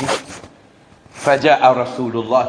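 A man's voice preaching, with a short hiss right at the start, a pause of well under a second, then speech resuming.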